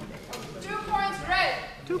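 Raised human voices: a high-pitched shouted call about halfway through, falling at its end, followed near the end by the start of a spoken call of the score.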